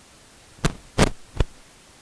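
Three short knocks in quick succession, about a third of a second apart, starting about half a second in, the middle one loudest, over a faint steady hiss.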